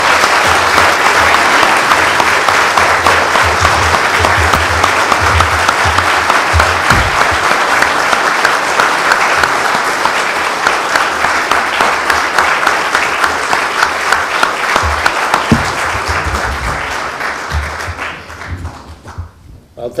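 A large audience applauding steadily and loudly, the clapping thinning out and dying away near the end.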